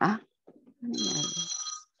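An electronic ringing tone: a steady, high ring of several pitches together, lasting about a second. A low voice sounds under it.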